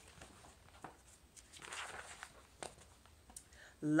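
Pages of a picture book being turned and the book handled: a soft paper rustle about a second and a half in, with a few light taps.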